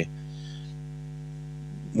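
Steady electrical mains hum: a low, even buzz made of a stack of evenly spaced overtones that does not change.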